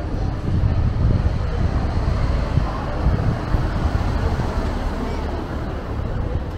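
Town street ambience: a steady low rumble of distant traffic, with passers-by talking.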